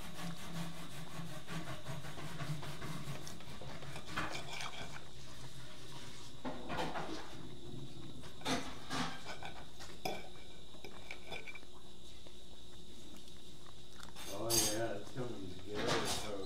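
Steel knife and fork scraping and clinking on a ceramic plate while steak is cut into small pieces, in scattered separate strokes, with a louder scrape near the end.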